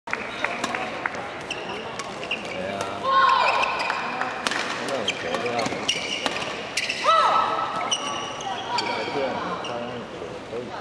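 Badminton play in a large hall: rackets striking the shuttlecock in sharp clicks, and shoes squeaking on the court mat, the loudest squeaks about three and seven seconds in. Voices in the background.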